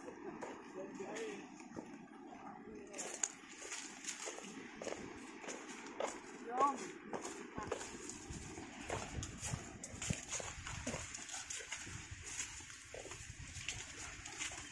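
Footsteps on a dry, leaf-covered dirt trail, a run of short irregular crunches and scuffs, with indistinct voices.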